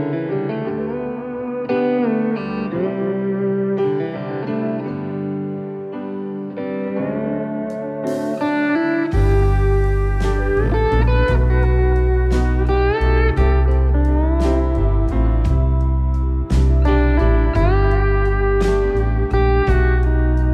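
Live band playing an instrumental passage: piano and electric lap steel guitar with sliding notes. About halfway through, bass and drums come in and the music gets fuller and louder.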